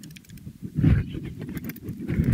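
Typing on a laptop keyboard, a run of key clicks that includes repeated presses of the Enter key, with a dull thump about a second in and another near the end.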